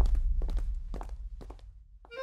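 Footsteps of several people walking, a loose run of light, uneven steps over a low rumble that fades away. The steps thin out toward the end.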